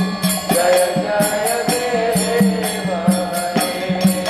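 Devotional kirtan: voices chanting a mantra to a steady beat of about three strikes a second from ringing hand cymbals and a drum.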